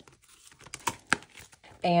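Paper banknotes and a plastic sheet protector being handled: soft rustling with a few sharp crinkles and crackles about a second in.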